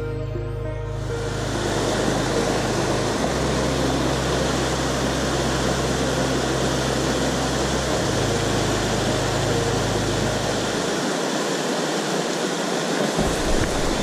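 Ambient background music fades out in the first second. It gives way to the loud, steady rush of a mountain river's white-water rapids over boulders. Low sustained music notes carry on beneath the water until about eleven seconds in.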